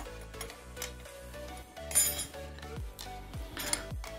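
Light metallic clinks as a bicycle chainring and its bolts are worked off the crank with an Allen key, the loudest about halfway through, over quiet background music.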